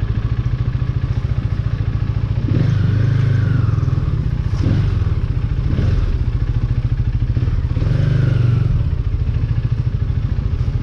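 Motorcycle engine running at low speed with a fast, even beat as the bike is ridden slowly. The engine note swells briefly twice, a few seconds in and again near the end, as the throttle is opened a little.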